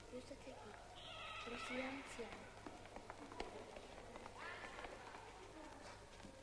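Faint, indistinct voices murmuring in a quiet room, in short scattered snatches with no clear words.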